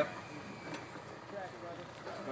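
Faint background voices of people talking over low ambient noise, with a light click a little under a second in.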